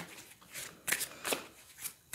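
A tarot deck being shuffled by hand: a few short, soft card-shuffling rustles.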